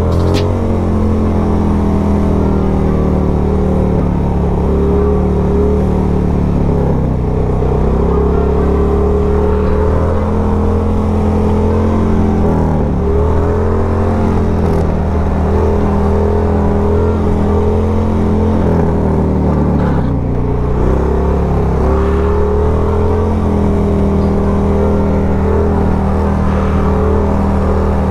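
1994 Harley-Davidson Sportster 1200's air-cooled V-twin held at steady revs through a long wheelie, with a few brief dips in revs as the throttle is eased and picked up again.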